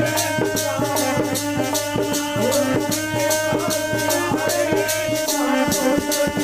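Kirtan music: a harmonium holds sustained chords while chimtas, steel tongs with small jingles, are struck in a fast, steady rhythm. A low held note drops out about five seconds in.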